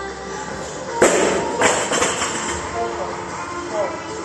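Loaded barbell with rubber bumper plates dropped from overhead onto rubber gym flooring: a loud thud about a second in, then a second hit as it bounces. Background music plays throughout.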